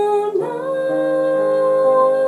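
A woman singing solo over piano accompaniment in long held notes. About half a second in, one note ends and her voice slides up into a new note that she holds.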